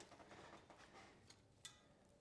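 Near silence: room tone, with one faint click about three-quarters of the way through.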